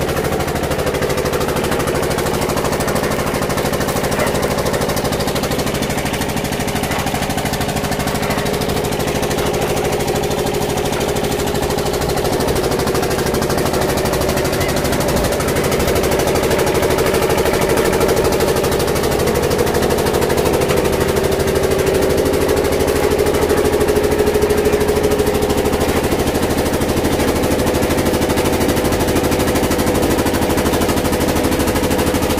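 Diesel engine running steadily with rapid, even firing pulses, driving a belt-driven sugarcane roller crusher.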